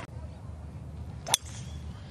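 A golf club striking the ball: a single sharp crack a little over a second in, over a faint steady low background.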